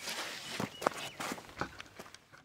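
Scuffing footsteps and rustling as a person gets up off a wooden bench and walks away, with a few short sharp knocks.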